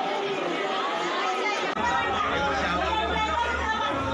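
Many voices talking over one another: the chatter of a crowd of devotees. A low hum comes in about halfway through.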